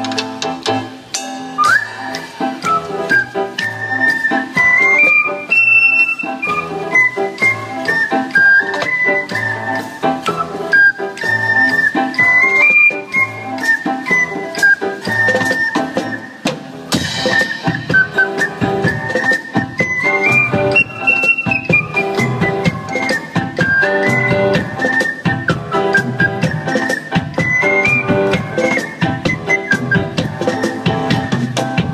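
Live ensemble music: a high, whistle-like wind melody played into microphones over strummed ukuleles and guitars and a hand drum.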